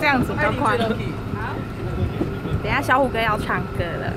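Voices talking over a steady low rumble from the bus and street traffic.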